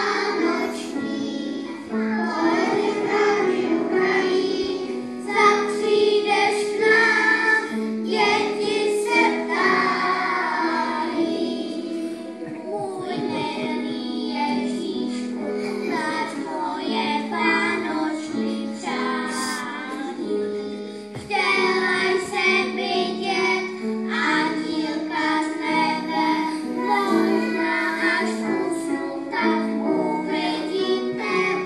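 A group of young children singing a song together over instrumental accompaniment that holds steady notes beneath the voices.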